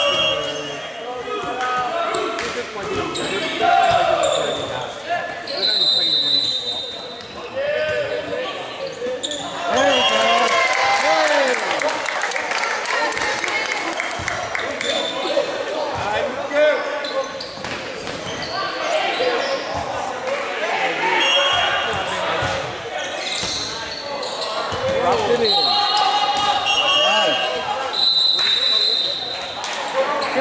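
Busy, echoing gymnasium during volleyball play: players' shouts and chatter, with volleyballs bouncing and being struck on the hardwood court.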